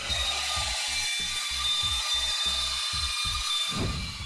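Band saw cutting through a plastic electrical outlet box, a steady hiss that stops abruptly near the end as the cut finishes.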